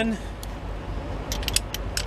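A few light metallic clicks in quick succession near the end, from a socket wrench being handled, over a low steady rumble.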